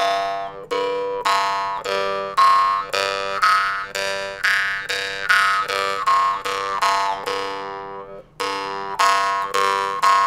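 Jaw harp tuned to G, plucked about twice a second. The drone note stays the same while the loudest overtone steps up a scale and back down, the melody shaped by alternating open-mouth and throat-closed resonances. The playing breaks off briefly about eight seconds in, then resumes.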